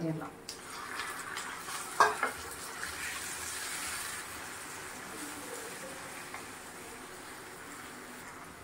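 Raw chicken pieces hitting hot oil with dried red chillies and garlic in a pan, setting off a steady sizzle that slowly fades as the meat cools the oil and is stirred with a wooden spatula. A sharp knock about two seconds in.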